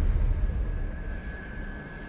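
Logo sting sound effect: a deep rumble with a steady high tone held over it, fading away.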